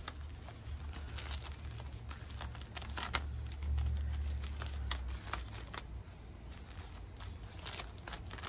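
Clear plastic bag crinkling and crackling in irregular sharp bursts as it is untied and unwrapped from the base of a plumeria cutting.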